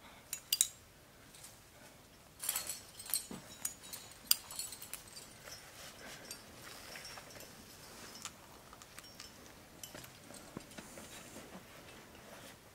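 Metal climbing hardware clinking and rattling: carabiners and cams on a trad climber's rack knocking together while protection is placed and the rope clipped. It comes as a series of sharp clinks, loudest in a cluster a few seconds in, with lighter ticks after.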